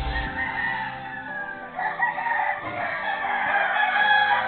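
Animal calls in the background, with a few calls that glide down in pitch about two seconds in.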